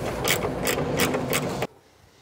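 Socket ratchet clicking at about five clicks a second as it undoes a bolt holding the coolant expansion tank, stopping suddenly near the end.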